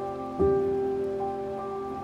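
Slow, soft piano music with sustained notes, a new chord struck about half a second in, over a steady rush of flowing stream water.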